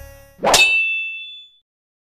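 A single metallic ding sound effect: one sharp strike whose bright ringing tone dies away over about a second, just after faint background music fades out.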